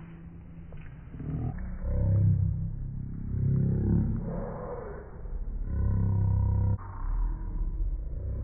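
A low, rough roaring sound effect added in the edit, swelling and fading several times with the loudest stretches about two seconds in and near the end.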